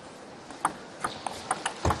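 Table tennis serve and rally: the celluloid ball clicking off the rackets and bouncing on the table in a run of quick, sharp ticks. The ticks start about half a second in, with a heavier thud just before the end.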